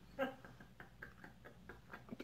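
Faint mouth sounds of a man chewing a dog-food-flavoured jelly bean: a brief muffled groan near the start, then a few soft clicks.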